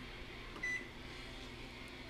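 A single short electronic beep from a microwave oven's keypad as a button is pressed, a little over half a second in.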